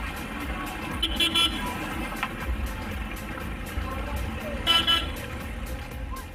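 Car horns honking in short toots about a second in and again near five seconds, over the steady low rumble of slow-moving cars, with music playing underneath.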